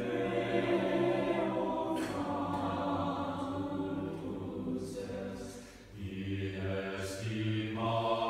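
A college chapel choir singing slow, held chords, with a short breath-like lull about six seconds in before the voices come back in.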